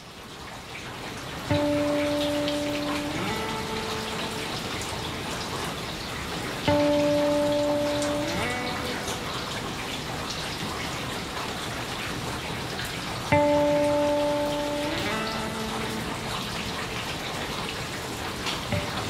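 Background track of a steady rain sound. Three sustained instrumental notes come in over it, each starting suddenly, held about a second and a half, then sliding up in pitch, roughly every five to six seconds.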